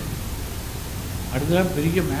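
Steady background rumble and hiss through a microphone during a pause in a man's speech; his voice resumes about one and a half seconds in.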